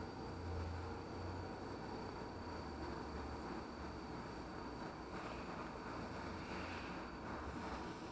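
Steady low background noise with a faint low hum: room tone, with no distinct clicks from the micrometer.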